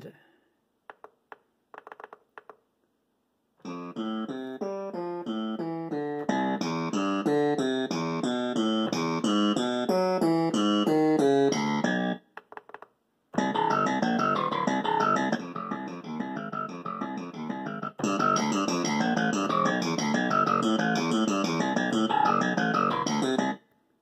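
Yamaha PSS-A50 mini keyboard's built-in arpeggiator playing fast, evenly stepping arpeggio patterns through its small onboard speaker. There are two runs of about eight and ten seconds with a short break between them, and the pattern changes partway through the second. A few faint clicks come before the first run.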